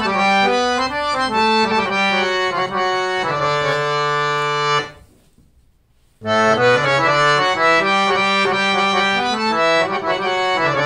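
D S Ramsingh three-line harmonium with vertical M T Mistry reeds, played by hand: a melodic phrase that settles on a held chord. About halfway through it stops for just over a second, then a new phrase begins.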